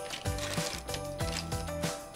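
Background music with a regular beat: repeated low bass notes under steady held tones.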